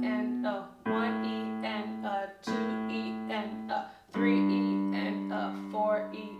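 Williams digital piano playing a slow left-hand bass line in single notes, one note at a time, each left to ring. A longer note is held through much of the second half.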